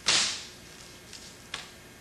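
Long bag-sealing clip pulled off the end of a vacuum bag, with a sudden sharp whoosh that fades within about half a second, then a faint click about one and a half seconds in.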